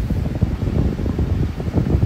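Low, uneven rumble of wind buffeting the microphone.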